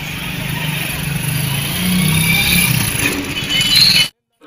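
Street traffic: the running engines of passing vehicles over a general outdoor din, growing louder and cutting off abruptly at the end.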